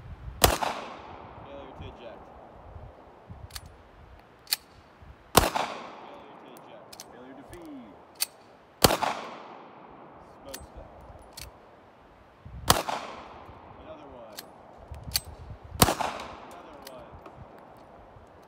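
Beretta 92FS 9mm pistol firing five single shots a few seconds apart, each with a long echoing tail, with lighter clicks between the shots. The pistol is being fired dry, without oil, which makes it fail to eject.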